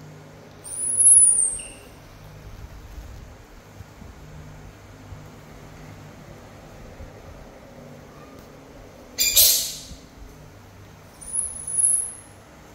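Baby macaque giving very high-pitched squeals: one rising and falling squeal about a second in and another near the end, with a short harsh screech in between, about nine seconds in.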